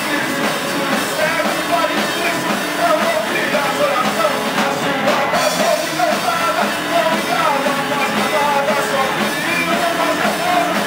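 Punk blues band playing live and loud: electric guitars over a drum kit, a dense, steady rock groove with no break.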